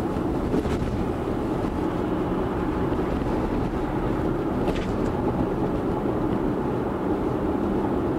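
Steady tyre and road noise inside a Tesla's cabin at highway speed, with a faint click near the middle.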